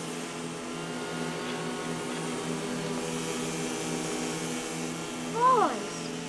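Hedge trimmer motor running with a steady hum. A brief voice cries out near the end.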